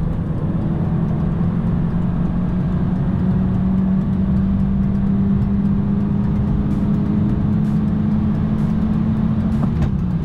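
Turbocharged 1.5-litre four-cylinder engine of a tuned 2017 Honda Civic EX-T at full throttle, heard from inside the cabin, its pitch climbing slowly as the car accelerates past 100 mph. Near the end there is a brief break and a drop in pitch as it shifts up. Heavy wind and road noise run underneath.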